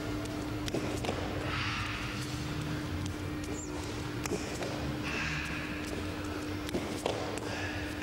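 Bare feet shuffling and tapping on a sports hall floor during sparring footwork, scattered light taps, over a steady hum.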